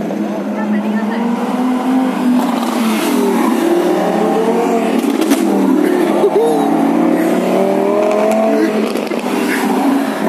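Lamborghini Huracán V10 engines revving and accelerating as the cars pull away one after another, with the engine pitch rising and falling in several overlapping glides.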